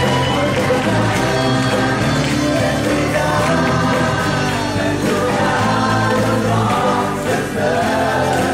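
Live worship song: a man singing at a microphone with an acoustic guitar, joined by other voices singing together like a choir.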